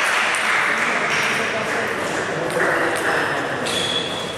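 Table tennis ball clicking sharply off the bats and table a few times as a serve is played and returned, over a background of voices.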